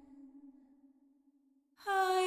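A woman's unaccompanied humming: a held low note fades away over about a second and a half, a short silence follows, and a new, louder hummed note begins just before the end.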